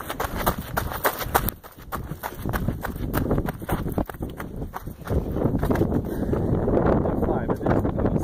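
Footsteps on a gravel path, a quick irregular crunching of steps, then a steadier rushing noise of wind on the microphone over the last few seconds.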